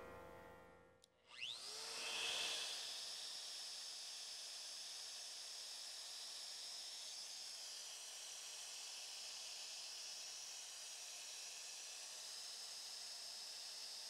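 Shaper Origin handheld CNC router's spindle motor spinning up with a rising whine about a second and a half in. It then runs steadily at speed with a high whine and a hiss.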